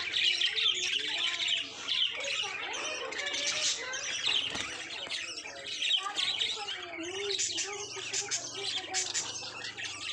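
A flock of budgerigars chirping and chattering continuously, a dense mix of rapid high chirps and warbles.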